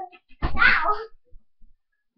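A child's short, high-pitched squeal about half a second in.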